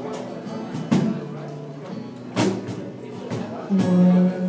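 A live acoustic band playing, with acoustic guitar, heard from across a large hard-floored room, with a few sharp knocks about a second and a half apart cutting through the music.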